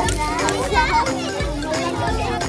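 Children's voices calling and playing over background music with steady held notes and a low bass.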